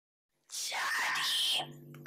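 Silence for about half a second, then a person speaking in a breathy, whisper-like voice.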